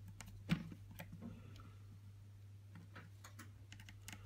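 Faint clicks and taps of fingers and a tiny screwdriver working on a compact camera, fitting a small screw to its loose flip-up screen. One louder knock comes about half a second in and a quick run of light clicks near the end, over a low steady hum.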